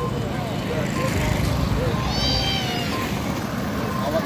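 Roadside traffic noise with motorcycle engines passing close, faint voices, and one short high-pitched call that rises and falls about two seconds in.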